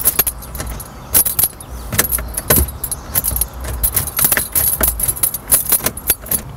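Car keys jangling and clicking at the ignition as the key ring is handled, a scattered run of small metallic jingles and clicks.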